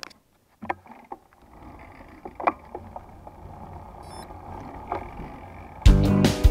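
Wind and road noise on a camera riding a bicycle downhill, a soft steady rush that builds slowly as speed picks up, with a few light clicks. Music cuts in suddenly and loudly right at the end.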